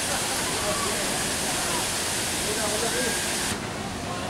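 Loud steady hiss of blank analog videotape static (tape noise between recorded segments), cutting off abruptly about three and a half seconds in.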